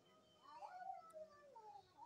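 Faint animal cries, several wavering calls that fall in pitch, running from about half a second in to near the end.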